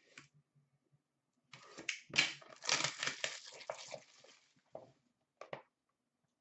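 A trading card pack's packaging being torn open by hand, a crackling, crinkling tear of a couple of seconds starting about a second and a half in. A few short handling clicks follow near the end.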